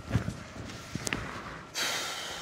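A soft knock, then a sharp click about a second later, as things are handled and moved about in a room. A short burst of hiss comes near the end.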